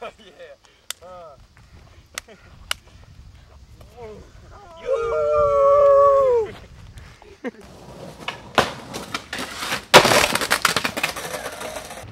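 A man lets out a long, loud howling yell, held on one pitch and dropping away at the end, about five seconds in. Before it come a few sharp clicks; in the last four seconds comes a rush of noise with knocks, loudest about ten seconds in.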